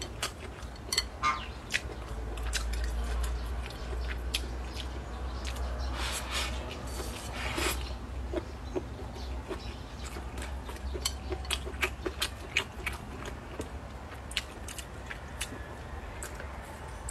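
A person eating close to the microphone: wet chewing and smacking of braised meat and rice, with light clicks of chopsticks and a couple of longer noisy bursts about six and seven seconds in as food is shoveled from the raised plate.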